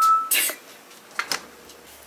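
Upright freezer door being handled on a faulty hinge that keeps it from closing: a loud scraping rustle at the start and again about half a second in, then two sharp knocks a little over a second in.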